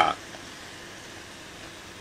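A man's voice ends a word right at the start, then a pause filled only by steady, faint background hiss: room tone.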